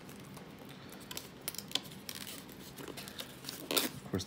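Plastic wrapping and styrofoam packaging crinkling and rustling as a boxed model train car is handled, in scattered crackles with a louder one near the end.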